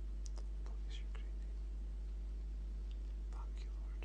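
Steady low electrical hum, with a few faint, short mouth clicks and breaths from a man sitting quietly between spoken lines.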